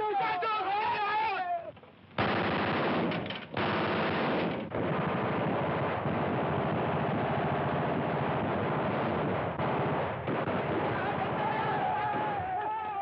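Sustained rapid machine-gun fire, a continuous rattle from about two seconds in, with a man's yell at the start and another near the end.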